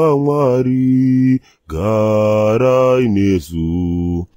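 A man chanting in long, drawn-out held notes that step down in pitch. Two phrases with a brief break about a second and a half in, ending on a low held note.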